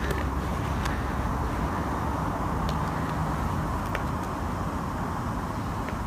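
Steady hum of distant road traffic, even throughout, with no distinct sound events.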